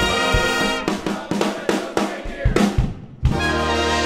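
High school jazz big band playing: a held brass chord, then a run of short accented hits from the horns and drum kit, a brief break, and the full band coming back in about three seconds in.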